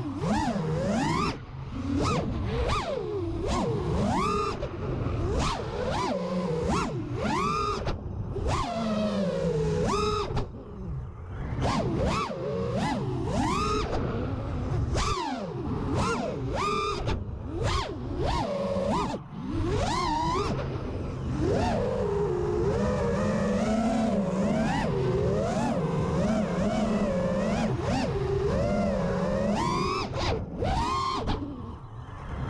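Five-inch FPV quadcopter's Amax 2306 2500kv brushless motors spinning HQprop V1S three-blade props, their whine rising and falling quickly and constantly with the throttle through freestyle flying, heard through the onboard camera, with a few brief dips where the throttle is cut.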